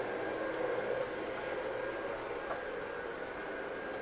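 Steady indoor background hum with a faint steady tone, and a light tick about two and a half seconds in.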